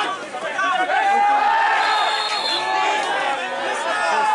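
Several men's voices shouting and calling over one another on a football pitch, with one long drawn-out call about a second in.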